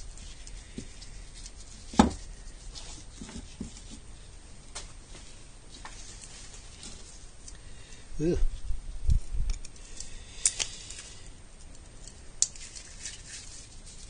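Small clicks and taps of a flathead screwdriver working the little screws of a Citroen 2CV's points (contact-breaker) box on a workbench. The loudest is one sharp click about two seconds in, with a dull knock around nine seconds.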